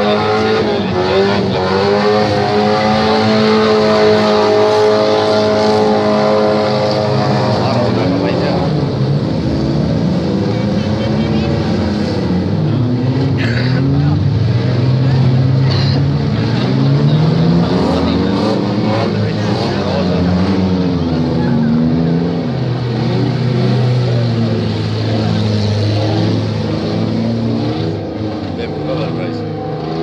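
Demolition derby cars' engines revving hard. One engine climbs and is held at high revs for the first several seconds, then pitches rise and fall repeatedly as the cars accelerate and back off.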